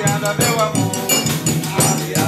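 Live forró-style music: a piano accordion plays held chords and melody while a steel triangle is struck in a steady, quick beat, with a man singing over it.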